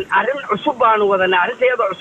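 Only speech: a man talking steadily, with a thin, phone-like sound.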